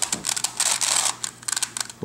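Plastic circle crystal pyraminx twisty puzzle being turned by hand, its layers clicking and rattling as the pieces slide past each other. It is a quick run of clicks that thins out near the end.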